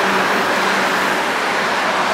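Steady road traffic noise with a constant low engine hum running underneath.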